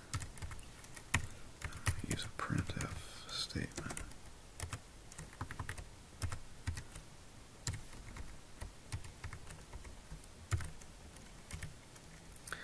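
Computer keyboard being typed on: irregular key clicks in short runs with brief pauses.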